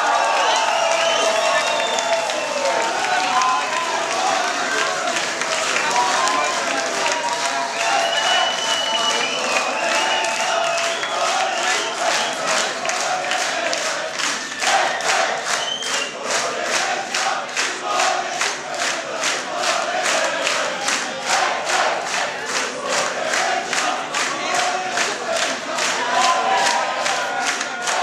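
Club audience cheering and shouting, many voices at once. After a few seconds, clapping in a steady rhythm joins in and carries on underneath the cheers.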